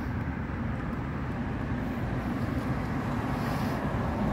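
Steady low rumble of outdoor ambient noise.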